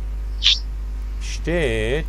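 A brief hiss about half a second in, then a man's voice beginning a word about a second and a half in, over a steady low hum.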